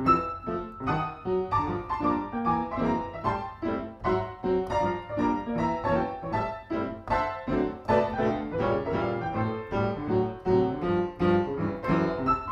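Grand piano being improvised on with both hands: a continuous flow of chords under a moving melody line.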